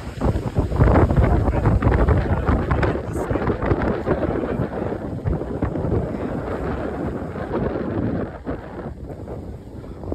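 Wind buffeting the microphone, a rough low rumble that is loudest over the first three seconds and then eases off.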